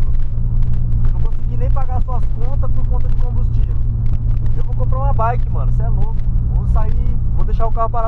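Steady low drone of a Volkswagen Polo sedan driving, engine and road noise heard from inside the cabin, with a man's voice talking over it at times.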